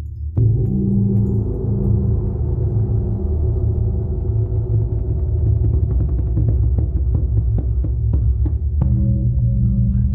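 A large bossed gong struck about half a second in, then ringing on with a deep, sustained hum. From about the middle, quick hand strikes on drums play over the ringing.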